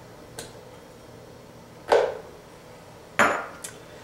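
Pieces of frozen mango dropped into a Vitamix blender's plastic container, landing with two loud knocks a little over a second apart and a couple of lighter clicks.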